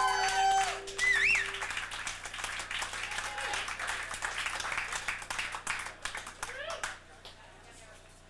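Small club audience applauding, with cheering and a whistle, as the last acoustic guitar note of a song rings out. The clapping fades away about seven seconds in.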